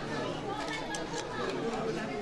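Several people talking over one another: steady crowd chatter.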